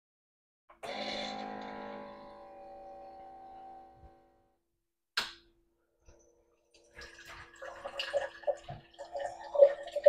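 Ninja Thirsti drink system starting a still, uncarbonated drink: a ringing tone sounds about a second in and fades over about three seconds, followed by a single click. From about seven seconds the machine's pump hums steadily while the drink pours into the glass, growing louder toward the end.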